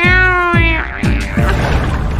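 A single meow, held for just under a second, over background music.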